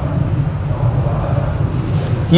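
A steady low rumble with no speech over it.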